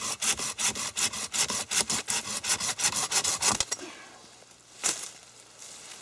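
Folding pruning saw cutting through the base of a green sapling in quick, even strokes, about five a second, that stop suddenly about three and a half seconds in. A single sharp knock follows about a second later.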